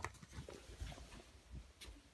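Faint, soft thuds of bare feet walking on carpet, several steps with light rustling and clicks from the handheld phone.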